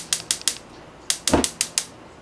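Two quick runs of sharp, evenly spaced clicks, about seven a second, with a short dull thump in the middle of the second run.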